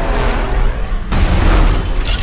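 Car-chase sound effects: a dense rush of vehicle noise, with a deep, heavy boom swelling in about a second in.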